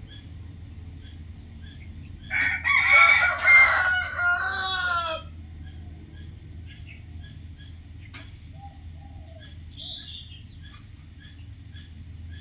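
A rooster crowing once, about two seconds in, for about three seconds, ending on a long falling note.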